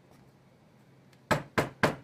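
Three sharp knocks about a quarter-second apart: a mango on a wooden stick being tapped against a plastic cutting board to seat the stick.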